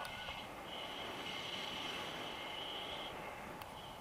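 Airflow rushing over the camera microphone during a tandem paraglider flight, a steady windy hiss. A thin, high, steady whistle sounds for about two seconds in the middle.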